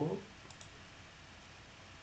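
Two quick, faint computer mouse clicks close together about half a second in, with low room hiss after them.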